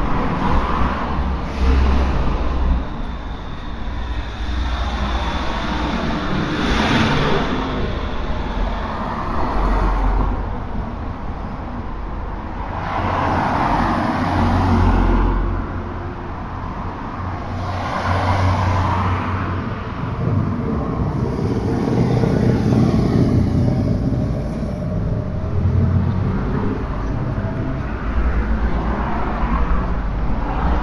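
Road traffic passing on a city street: a steady low rumble with several vehicles swelling past one after another.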